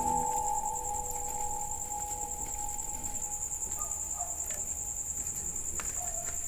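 Crickets trilling steadily, a high, even, fast-pulsing chorus.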